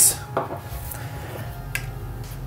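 A short PVC pipe piece being pushed into PVC joint fittings, giving a couple of light plastic clicks, one about a third of a second in and one near the end, over quiet background music.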